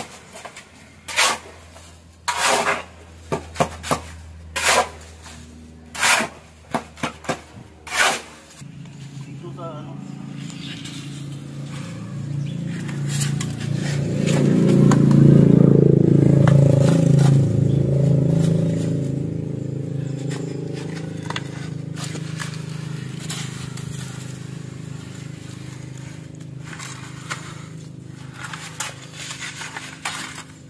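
Steel shovel scraping and chopping through a wet cement mix on a concrete slab, about a dozen sharp strokes over the first eight seconds. After that comes a steady low droning hum that swells in the middle and slowly fades.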